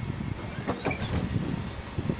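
Freight train of loaded open wagons rolling past: a low, uneven rumble with a few short clanks and wheel clicks around the middle.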